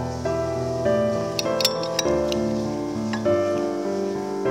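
Gentle background piano music with held notes. A few brief clinks come about halfway through, fitting a cup being set on a ceramic saucer.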